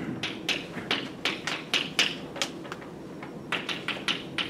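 Chalk tapping and scratching on a blackboard while an equation is written, a quick run of short strokes with a brief pause about three seconds in.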